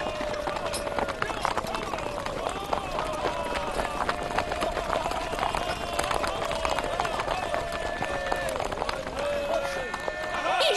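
A group of horses galloping over grass, their hoofbeats a dense scatter of thuds, while many riders shout together in long, wavering held cries.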